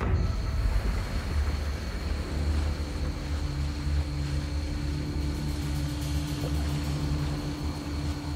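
Mercury outboard motor running steadily with a low rumble as the boat moves across the swamp. A steady tone joins in about a third of the way through.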